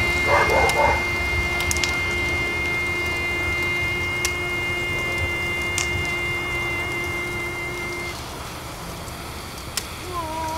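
Film soundtrack: a steady held high tone with a lower one beneath, over a hissing background with a few scattered sharp cracks. The held tones stop about eight seconds in.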